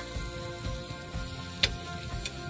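Background music with two sharp clicks about one and a half seconds apart, the second the louder, from metal tongs knocking against the pot as pork knuckles are set into it.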